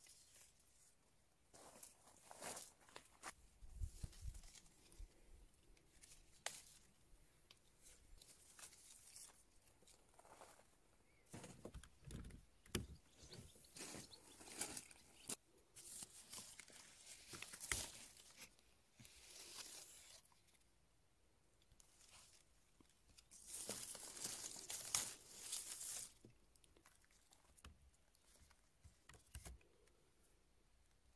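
Leaves and twigs of an apple tree rustling in several short, irregular bursts as apples are handled and picked by hand, the loudest burst near the end.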